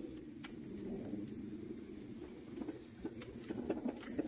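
Chevrolet car's engine and road noise from inside the cabin while driving slowly: a steady low rumble and hum, with a few faint clicks.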